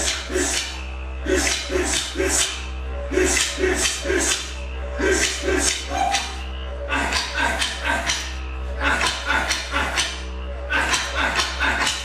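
Music for a traditional Aboriginal dance: a didgeridoo holds a steady low drone, pulsed in a rhythm that comes in short phrases, over sharp rhythmic beats that click in quick clusters about once a second.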